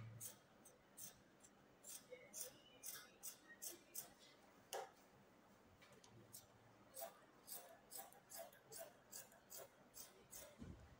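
Scissors snipping through stretchy fabric in a steady run of quiet cuts, about two a second, thinning out for a short while about halfway.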